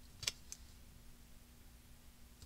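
Hands handling a strip of patterned paper and a cardstock card base on a craft mat: a sharp click about a quarter second in, then a fainter one just after, over a faint steady hum.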